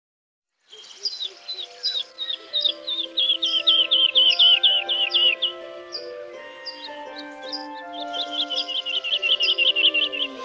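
Soft intro music of held chords with birdsong laid over it. The birdsong is a run of quick repeated chirps that starts just under a second in and comes thickest in two bursts, in the middle and near the end.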